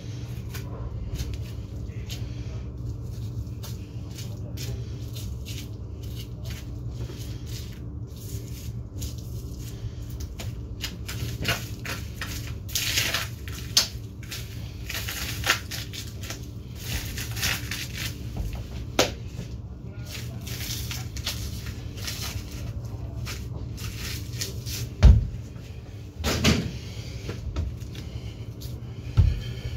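Butcher's knife cutting and pulling at a hanging veal leg: irregular short scrapes and clicks of blade and meat handling. Underneath runs a steady low hum from the cold room's refrigeration. Two heavier thumps come near the end.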